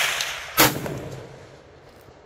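6.5 rifle shot: the tail of the report from a shot fired just before, then a second sharp crack a little over half a second in, dying away over about a second.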